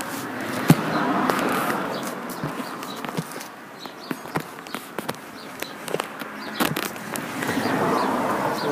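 Handling noise on a camera's built-in microphones as a piece of kitchen sponge is pressed and rubbed over the mic holes. A scratchy rustle swells about a second in, fades, and swells again near the end, with scattered sharp clicks of fingers on the camera body.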